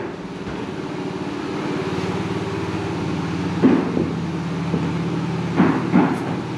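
Construction-site machinery running steadily: a droning hum of several even tones, with two brief louder sounds partway through.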